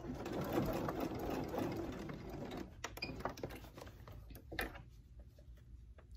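Pfaff Ambition computerized sewing machine running, stitching a long straight basting stitch (length 4.5) through stretch knit fabric; it runs for about the first two and a half seconds, then stops, and a couple of light clicks follow.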